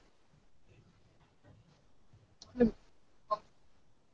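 Quiet room tone broken by a woman's brief hesitant "um" about two and a half seconds in, with a couple of short clicks just before and after it.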